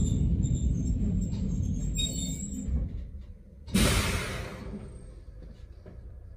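Running rumble of a 762 mm narrow-gauge Yokkaichi Asunarou Railway train, fading as it slows to a stop. About four seconds in there is a sudden burst of compressed-air hissing from the train's air system, lasting about a second and tailing off.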